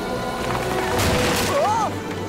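Cartoon soundtrack: background music with a short, loud rushing noise about a second in, then a startled voice going 'uh' near the end.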